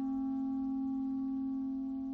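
Symphony orchestra in a slow passage, holding one long steady note with a few fainter higher tones sounding above it.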